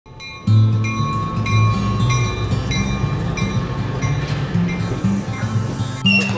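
Instrumental music with a moving bass line and a steady beat of about one and a half beats a second, coming in about half a second in.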